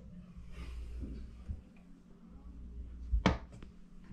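Plastic toilet lid being lifted, with soft handling rustle and one sharp knock about three seconds in.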